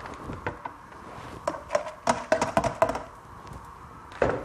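Light knocks and taps from handling in the kitchen, bunched between about one and a half and three seconds in, a few with a brief ringing note.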